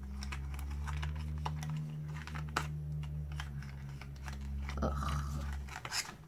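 A small cardboard cosmetics box and the product inside being handled and unpacked by hand, with scattered clicks, taps and crinkles. A steady low hum runs underneath and stops near the end.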